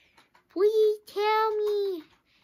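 A child singing two held, wordless notes at a steady pitch, a short one and then a longer one.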